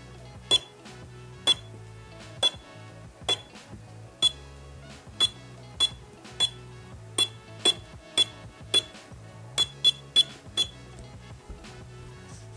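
Portable battery spot welder firing through handheld copper electrode pens: a sharp snap with each weld pulse as a metal strip is welded onto 18650 cell terminals, about sixteen welds at roughly one every half second to a second. Quiet background music plays underneath.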